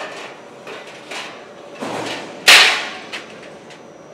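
Perforated sheet-metal cable trays being handled and stacked on a roller run-out table: a few light metal clanks and a scrape, then one loud ringing clank about two and a half seconds in.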